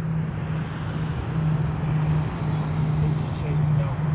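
Outboard-powered boat running slowly into the channel: a steady low engine drone with a faint hiss of noise over it.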